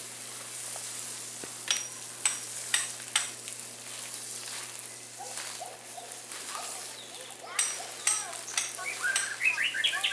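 Garden hose spraying water in a steady hiss, with short bird chirps a few times about two to three seconds in and more often in the last few seconds.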